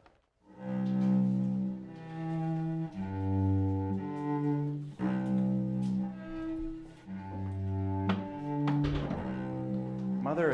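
Slow, low bowed-string melody of long held notes, each lasting a second or two, starting about half a second in.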